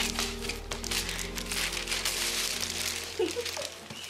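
Crinkling and rustling of a present's packaging as a boxed toy is handled and opened, with many short crackles, over steady background music.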